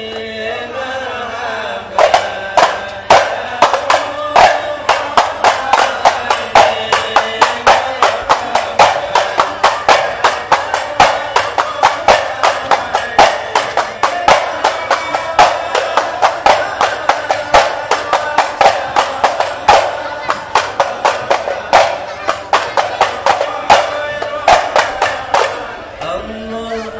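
A group of voices singing to Javanese rebana frame drums. The drums come in about two seconds in with a fast, steady, many-stroke rhythm that carries over the singing, and they stop just before the end.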